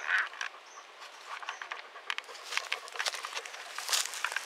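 Irregular rustling and crackling of dry grass and twigs as someone moves through brush with a dog close by.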